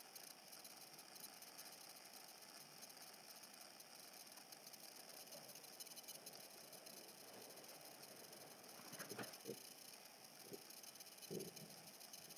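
Near silence: faint room hiss, with a few brief soft knocks about nine seconds in and again near the end.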